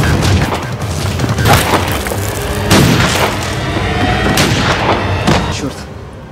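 Tense film music with a heavy low beat, struck by several loud sharp bangs about a second or more apart, the loudest around three seconds in.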